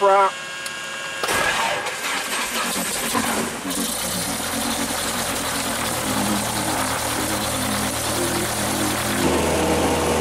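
A light airplane's piston engine being started after the "clear" call, heard inside the cabin: it cranks over about a second in, catches and settles into a steady run. Near the end the engine note deepens.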